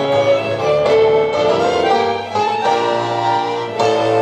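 Tango music from a small ensemble, a violin carrying long held notes with vibrato over a steady double-bass line; a new phrase begins with a sharp attack near the end.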